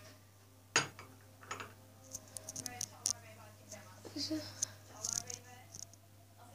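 Quiet speech, with a sharp knock about a second in, scattered small clicks and a steady low hum underneath.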